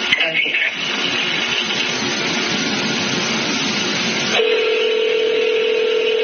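Steady hiss of a recorded telephone line, then about four seconds in a single steady telephone tone starts and holds.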